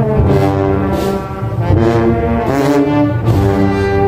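Brass band playing a slow processional funeral march, with low brass carrying sustained chords that change about once a second.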